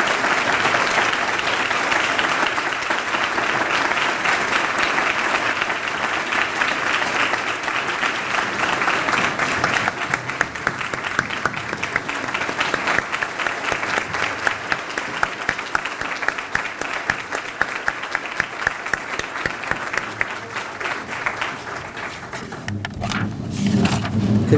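A large audience applauding. The clapping is dense at first, thins out about halfway through and dies down near the end.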